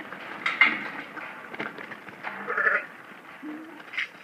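Sheep bleating a few times in short calls, with scattered knocks of hooves on the dirt as the flock runs.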